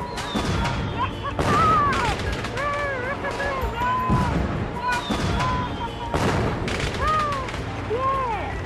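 Fireworks going off: a run of bangs and crackling bursts. Over them come short cries that rise and fall in pitch, a child's wordless cheering.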